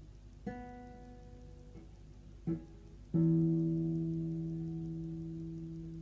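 Acoustic guitar plucked three times, one note at a time: a note about half a second in, another about two seconds later, then a louder one soon after that rings on and slowly dies away.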